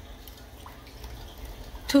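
Large pot of pork-bone soup at a rolling boil on a gas stove, a faint steady bubbling with a low rumble underneath and one small tick about halfway through.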